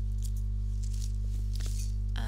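A steady low electrical hum, with a few faint crackles of masking tape and tissue paper being handled and torn about halfway through.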